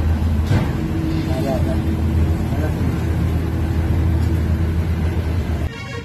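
A steady low engine hum with faint voices, cutting off abruptly near the end.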